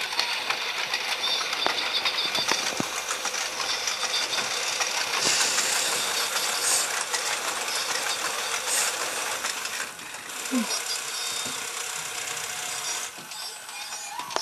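Motorized Gemmy animated Halloween figure running, its mechanism giving a steady, fast mechanical rattle as the figure's arms move, with a brief dip about ten seconds in.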